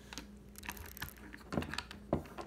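Stones and pebbles being handled on a wooden table: scattered light clicks and taps, with a louder knock about one and a half seconds in.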